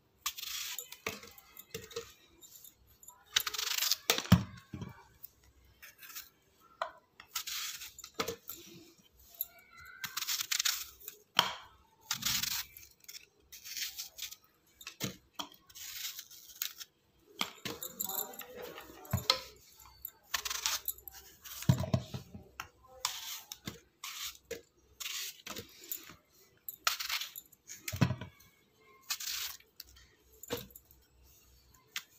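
Kitchen knife slicing through raw apples in short, irregular crisp cuts, with apple pieces dropping into a plastic blender jar and a few dull knocks.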